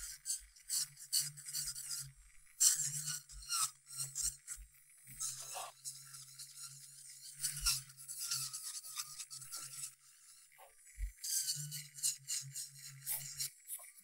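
Electric nail drill with a ceramic cuticle bit working around the nail folds, taking off cuticle and loose skin in short scratchy passes, with the motor humming low underneath.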